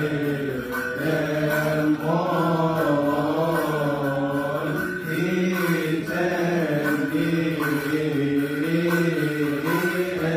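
Coptic Orthodox Vespers chant sung by male voices: a slow, wavering, ornamented melody over a steady low held note, with no instruments leading.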